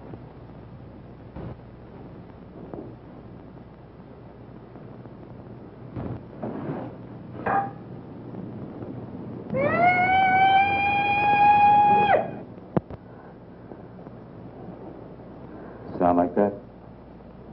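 Peacock's cry: one long, loud call that rises at the start, holds a steady pitch for about two and a half seconds and cuts off sharply. It comes after a few soft knocks over a faint steady hiss.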